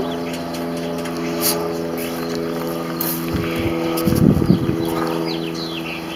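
A steady, even mechanical hum from an unseen motor or engine, holding one pitch, with a few low thuds from camera handling or footsteps as the camera is carried along about three to five seconds in.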